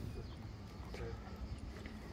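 Wind buffeting the phone's microphone, an uneven low rumble, with faint voices of people nearby and a few light clicks.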